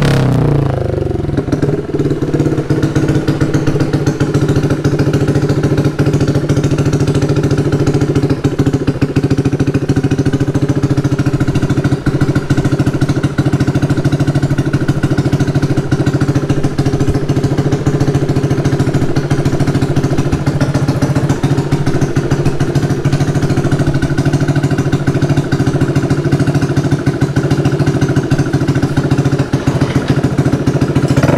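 Yamaha Aerox 155 scooter's single-cylinder engine idling steadily through an SC-Project slip-on exhaust, settling down from a rev in the first second.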